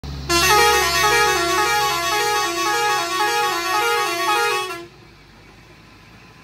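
Truck horn sounding a loud, repeating two-note tune for about four and a half seconds, then stopping, over the low running of the truck's engine.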